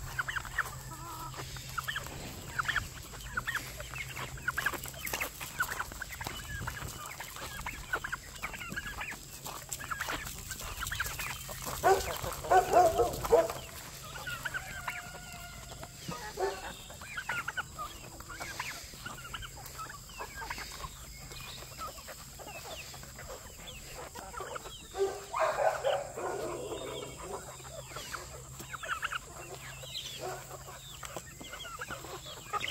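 A flock of free-ranging chickens clucking, with many short calls throughout. Two louder, longer calls stand out, about twelve seconds in and again about twenty-five seconds in.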